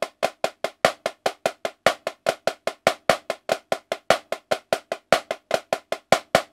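Marching snare drum played with sticks: the 'ones' line of the choo-choo moving-rudiment grid, about five even strokes a second, with louder accented strokes among them.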